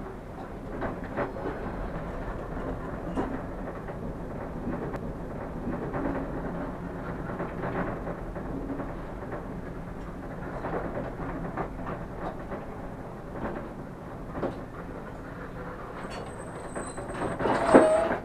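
A train rolling slowly over station tracks, heard from the cab: steady running noise with irregular clicks and knocks of the wheels over rail joints and points. A thin high squeal starts near the end.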